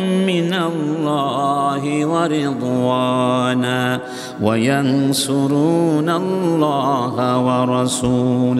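A man reciting a Quranic verse in Arabic in a melodic, chanted tajwid style. He holds long notes that rise and fall, with a short pause for breath about four seconds in.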